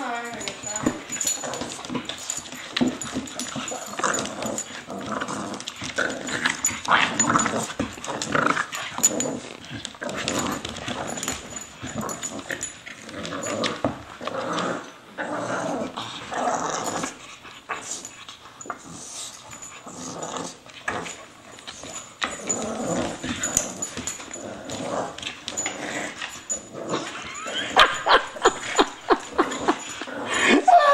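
A bulldog and a corgi play-fighting, with growls and short yelps on and off throughout, and a run of sharper, louder sounds near the end.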